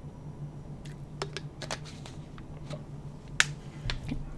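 A handful of short, sharp clicks at uneven intervals, the loudest about three and a half seconds in, over a low steady hum.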